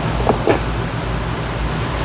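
Hand snips cutting a small piece off a strip of magnetic sheet: a couple of short sharp clicks in the first half-second, over a steady background hiss and hum.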